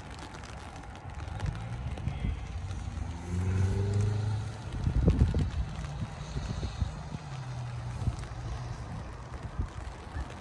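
A motor vehicle engine running, its pitch rising as it speeds up about three to four seconds in, over a low rumble. A cluster of thumps follows about five seconds in.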